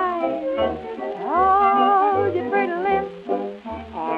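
Instrumental break of a late-1920s dance orchestra on an old record: a lead instrument plays a sliding melody with vibrato over a recurring bass note. The sound is thin, with no top end.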